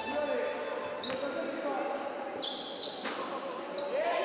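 Live court sound from a basketball game in a large hall: sneakers squeaking on the hardwood and the ball bouncing, with players' voices, fairly quiet.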